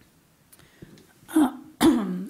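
Near silence, then a woman says "uh" and clears her throat sharply into the microphone about a second and a half in, just before starting to speak.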